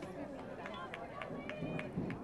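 Faint voices of people talking outdoors, with a quick run of light, sharp taps, about five a second, through the second half.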